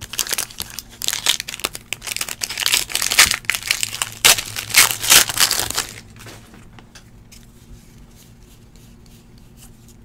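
Foil wrapper of a Score football card pack being torn open and crinkled for about six seconds, then only faint handling of the cards.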